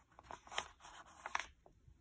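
Faint paper rustling and scraping as a card is slid out of a tight paper envelope pocket, with a few short crinkles and soft clicks over the first second and a half.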